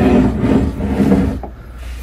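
A glass whiskey bottle handled on the stone tabletop: a rough rubbing, scraping sound for about a second and a half, then quieter.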